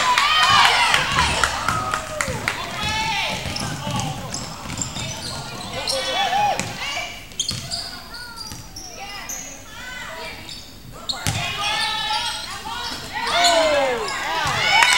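A basketball bouncing and sneakers squeaking on a hardwood gym floor during play, with players' voices in the gym. There is a sharper thump about eleven seconds in.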